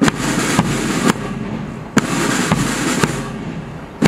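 Parade band drums: a continuous snare-drum rattle with a louder beat about every half second.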